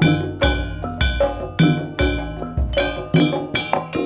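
Dance music of struck, ringing metallic percussion over a deep drum, in a steady beat of about two strikes a second.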